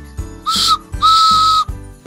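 Train whistle, a short toot followed by a longer blast, held at one steady pitch, over background music with a steady beat.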